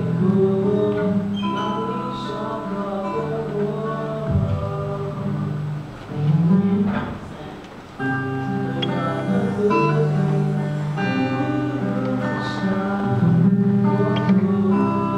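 A man singing a slow song through a microphone, accompanied by acoustic guitar, with a brief lull a little past halfway before the guitar picks up again.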